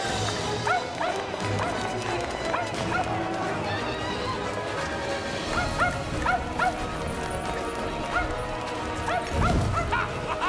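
Small dog yapping in quick bunches of short high yips, over background film music.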